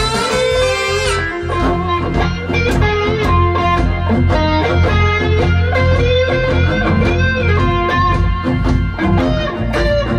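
Electric guitar taking a blues solo in quick single-note runs over a low bass line, after a bowed violoncello da spalla phrase ends about a second in.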